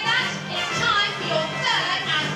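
A large audience of children shouting and cheering together, many high voices overlapping, with music playing underneath.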